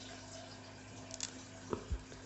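Quiet handling of a pelargonium cutting by hand: a couple of faint crisp clicks about a second in and a soft low knock near the end, over a low steady hum.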